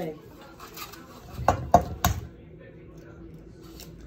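Three sharp knocks against a stainless steel mixing bowl in quick succession, about a second and a half in, like an egg being tapped on the bowl's rim to crack it.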